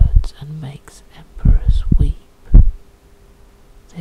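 A man's voice speaking in short phrases, with a faint steady hum underneath.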